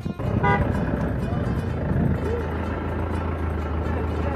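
Highway traffic noise with a motor vehicle's engine running close by. A steady low drone sets in about a second and a half in and holds.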